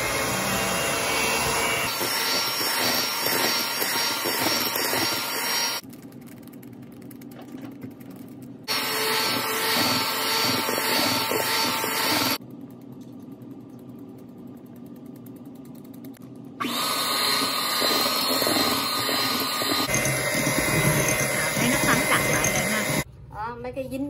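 Electric hand mixer with twin wire beaters running at a steady speed, beating flour into an egg-and-sugar sponge cake batter in a glass bowl. It runs in three stretches of several seconds each, stopping twice for a few seconds in between.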